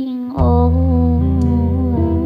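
A slow live song: a woman's voice holds a long wordless, hummed note, and low bass notes come in about half a second in, changing pitch once near the middle.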